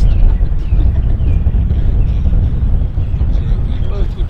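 Wind buffeting the camera microphone: a loud, uneven low rumble, with faint distant voices behind it.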